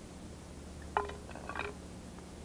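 Hands kneading a wet clay, compost and seed mixture in a bowl: a short cluster of small clinks and knocks about a second in, and another half a second later, over a faint steady hum.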